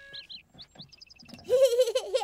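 Birds chirping in quick short chirps. About one and a half seconds in, they are overtaken by a loud, wavering, wordless vocal sound from a small child.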